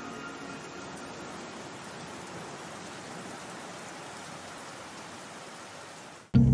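Steady rain falling, an even hiss with no rise or fall.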